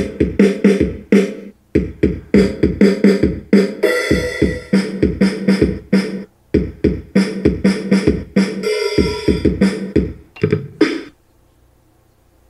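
Electronic drum-kit samples from the Sylvania SP770 BoomBox speaker's built-in drum pads, struck in a quick run of hits with a couple of longer sustained sounds among them, stopping about a second before the end.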